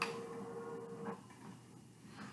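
Faint soundtrack of a video playing on a TV: a steady hum-like tone that cuts off about a second in, leaving a quiet stretch.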